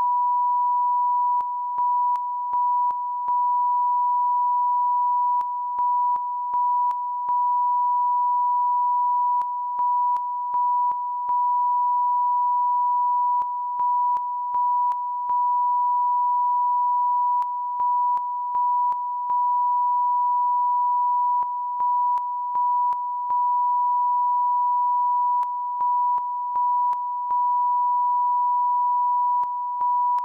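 Broadcast line-up tone from a VALID (Video Audio Lineup & ID) test signal: a steady high sine tone broken by short gaps in small groups, repeating about every four seconds, which identify the audio channels.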